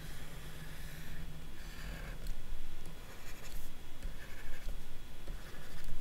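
Stylus strokes on a drawing tablet as lines are drawn: a series of short, scratchy strokes with brief pauses between them.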